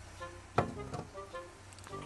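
Soft background music with a sharp knock about half a second in and a lighter one just after: a glass cup being set down on a refrigerator's plastic shelf.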